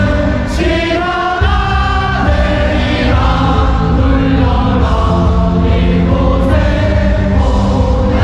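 A crowd of students singing a cheer song together over loud amplified backing music with a heavy bass.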